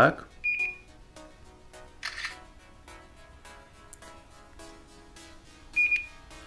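Smartphone camera app sounds from a Homtom HT16: a short high beep, a brief shutter sound about two seconds in, and a second short beep near the end, over faint background music.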